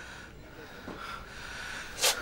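Faint sniffing and breathing from a woman who is crying.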